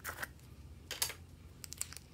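Small plastic slime tub clicking and crackling as fingers squeeze and handle it: a few sharp clicks, the loudest about a second in, then a quick run of clicks near the end.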